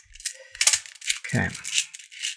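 Loose beads of a Hasbro Atomix moving-bead puzzle clicking and rattling in quick, irregular clicks as its rings are turned by hand.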